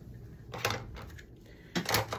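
A few sharp plastic clicks from a corner rounder punch being handled, one about half a second in and a quick pair near the end.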